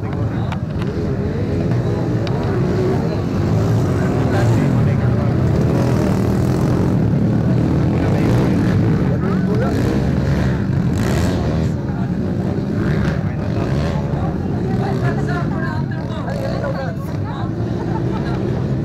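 Several motocross bikes racing on a dirt track, their engines revving with pitch rising and falling as they accelerate and pass, loudest in the middle of the stretch. Voices can be heard through the engine sound.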